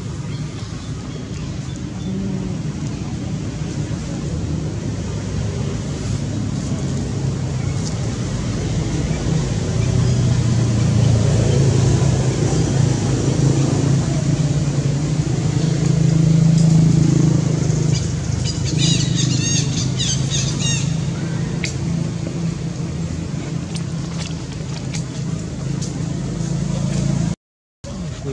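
A motor vehicle's low, steady engine rumble that grows louder in the middle and then eases off, with a brief run of high-pitched squeaks about nineteen seconds in.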